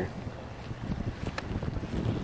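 Wind buffeting the microphone outdoors as a low, uneven rumble, with one light click about one and a half seconds in.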